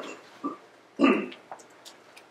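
A single short cough about a second in, with a softer throat sound just before it.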